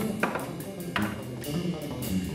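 Live acoustic jazz quartet in a quieter, sparse passage: held pitched notes with two sharp percussive strikes, about a quarter second and a second in.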